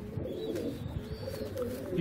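Domestic pigeons cooing faintly, low and wavering.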